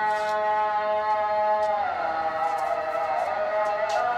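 Muezzin's call to prayer (adhan): a man's voice holding long, drawn-out notes, gliding to a new pitch about halfway through and wavering after that.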